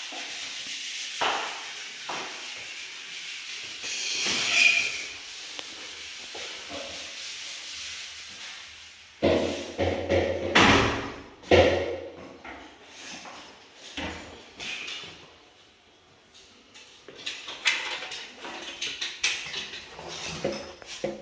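Irregular knocks and bangs, loudest in a cluster a little before the middle, with scattered lighter clicks near the end.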